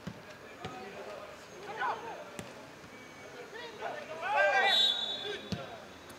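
Football players shouting to each other on an open pitch, with a loud drawn-out call about four seconds in, and a few sharp thuds of the ball being kicked.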